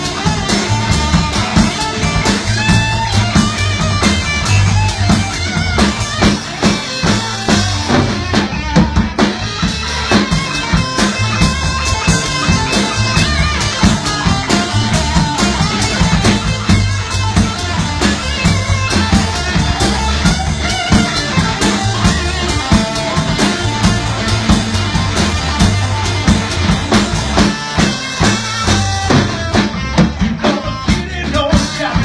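A blues band playing live: electric guitar, electric bass and drum kit running through an instrumental stretch of the song with no singing, the drums keeping a steady beat.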